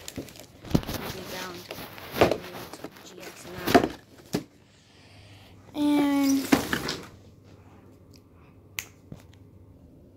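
Cardboard and clear plastic packaging of a Pokémon card collection box being handled, rustling and crinkling with scattered clicks for the first few seconds. About six seconds in comes a short, loud pitched sound lasting under a second, then a couple of sharp clicks near the end.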